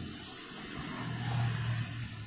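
Scissors cutting along a strip of craft foam (foami) in a steady noise, with a low hum joining in about halfway through.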